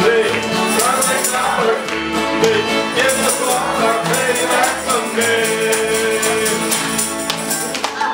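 Acoustic old-time string band playing: fiddles carrying the melody over strummed guitars and an upright bass, with a steady strummed beat.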